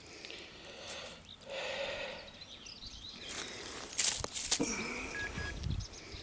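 Faint scraping and rustling of fingers rubbing soil off a small coin freshly dug from the ground, with a couple of small clicks about four seconds in.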